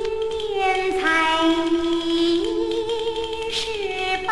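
Vinyl LP playback of a 1979 Mandarin xiaodiao song record. A melody of long held notes slides from one pitch to the next, with faint surface noise from the old record.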